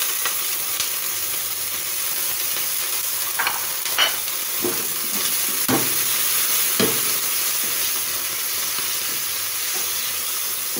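Pork slices and scallions sizzling in a hot frying pan, a steady hiss, with a spatula scraping and knocking against the pan in several short strokes between about three and seven seconds in as the meat is stirred.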